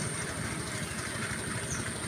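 A small engine running steadily, with an even low throb.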